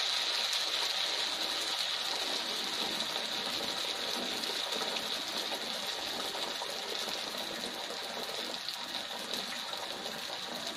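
A teler pitha, a Bengali oil-fried cake of rice-flour batter, sizzling and bubbling in hot oil in a wok. It is a steady, even hiss that slowly dies down as the cake browns.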